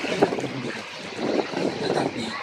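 A river cruise boat under way, with motor and water noise and wind buffeting the microphone. There is a short sharp knock about a quarter second in.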